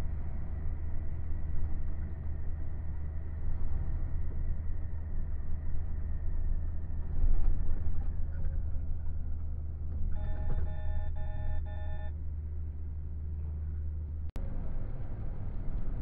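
Steady low drone of a truck's engine and road noise heard inside the cab. About ten seconds in comes a run of four electronic beeps, about two a second. Near the end the sound drops out for an instant and the drone carries on.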